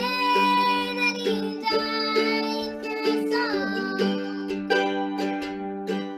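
Mandolin strummed as a steady accompaniment under a girl's singing voice.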